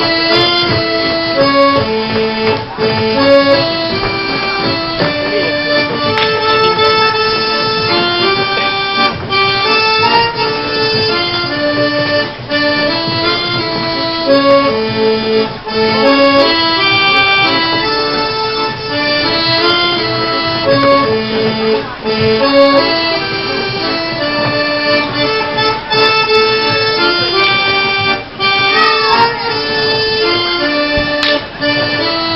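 Accordion-led Polish folk dance music from the Kielce region: a continuous tune of quick, held notes that plays without a break as the accompaniment to a folk dance.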